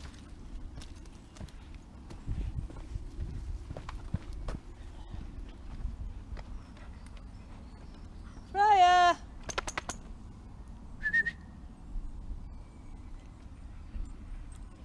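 Footsteps and dogs moving along a dirt woodland path, with one short, loud, wavering whine from a dog about two-thirds of the way through. A brief high squeak follows a couple of seconds later.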